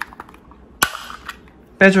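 Plastic gimbal cover of an SG907 Max drone being unclipped. A few small clicks as its side catches are pressed, then one sharp snap about a second in as the cover comes free.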